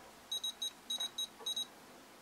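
Futaba T14SG radio transmitter beeping as a finger scrolls its touch-sensor dial through the menu: a quick run of about eight short, high beeps, one per menu step.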